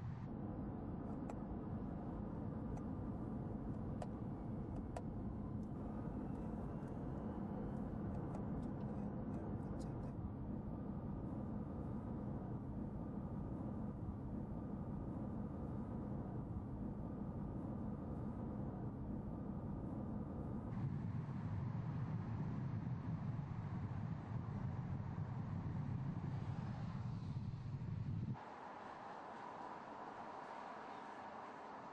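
Mercedes-Benz SLS AMG E-Cell electric sports car driving, heard as a steady rumble of tyre and wind noise with no engine note. The sound changes abruptly about 21 seconds in and again near the end.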